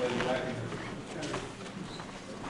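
People's voices in a large hall: a man speaking briefly at the start, then low murmur of the crowd, with a few light knocks.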